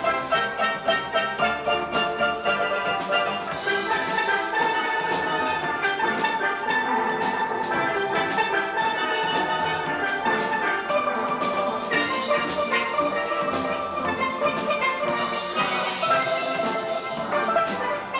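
Steel band of many steelpans playing a soca piece together, a dense stream of struck, ringing notes.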